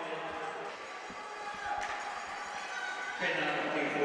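Rink sound of an ice hockey game in play: scattered knocks of sticks and puck over distant voices in the arena, getting louder about three seconds in.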